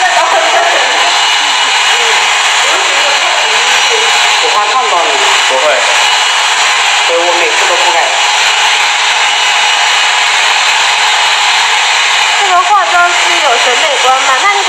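Handheld hair dryer running steadily, blowing on hair, a loud even hiss with voices talking faintly underneath.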